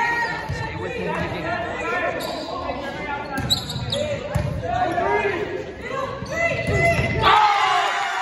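Volleyball rally on a hardwood gym court: the ball being hit and knocked about, sneakers squeaking, and players calling out, echoing in the large hall. A loud burst of noise comes about seven seconds in.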